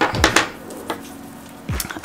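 A few light clicks and knocks from small makeup containers being handled and set down: several close together at the start and one more near the end.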